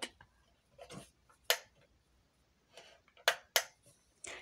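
A few sharp plastic clicks and taps from a twin-head emergency light fixture being handled: a single click about a second and a half in, then two close together near the end.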